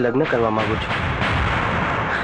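A loud burst of noise, like a dramatic boom or crash sound effect, starting just under a second in and running on for about a second and a half, right after a spoken word.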